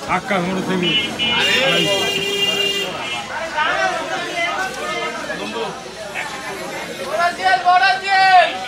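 Several people talking in a crowd, with a steady high tone lasting about a second and a half near the start.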